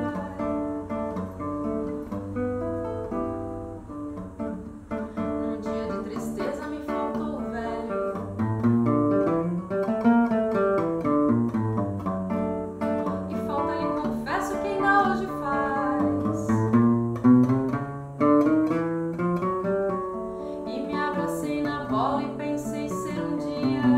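Seven-string nylon-string guitar (violão de sete cordas) playing a samba instrumental passage: plucked chords with melodic runs moving through the low bass strings.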